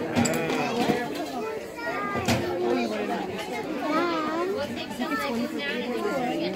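Children's chatter: several young voices talking over one another, with a laugh at the start.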